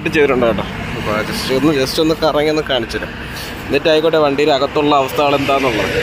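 A man talking, narrating steadily with short pauses.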